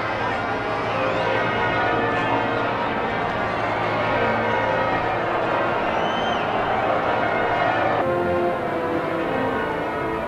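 St Paul's Cathedral's church bells pealing in change ringing over the noise of a large crowd. About eight seconds in, the sound cuts abruptly to a different mix.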